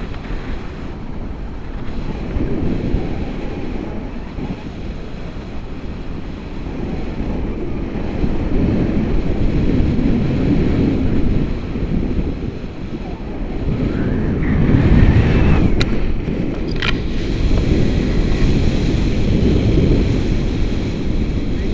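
Rushing airflow of a paraglider in flight buffeting the camera microphone, a low steady rush that swells and eases and is loudest about three-quarters of the way through. Two sharp clicks come shortly after the loudest part.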